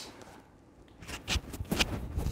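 Clip-on lapel microphone being handled at a shirt collar: loud rubbing and scraping right on the mic with several sharp clicks, starting about a second in.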